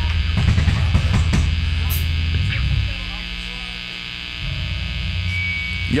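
Live band's stage amplifiers humming and buzzing between songs, with low bass notes and a few drum hits during the first three seconds, a quieter stretch, then low notes again near the end.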